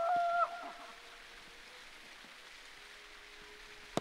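A short, steady-pitched call at the start, then a quiet outdoor background. Just before the end comes a single sharp thud of a football being kicked.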